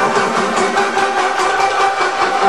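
Electronic dance music in a breakdown: held synth chords over light ticking, with the kick drum and bass cut out.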